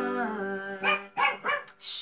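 An electronic keyboard's last chord fades out, then a dog barks three quick times.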